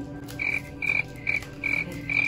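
A frog calling: short high-pitched notes repeated evenly, about two and a half a second, starting about half a second in, over a steady low hum.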